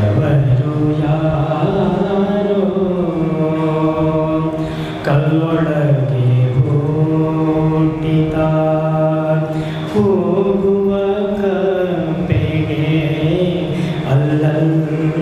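A man singing a Kannada devotional song solo, in long held, ornamented phrases that pause briefly for breath about five and ten seconds in.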